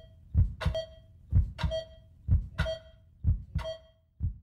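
Intro music built on a heartbeat-like double thump, about one pair of beats a second, each beat carrying a short ringing tone.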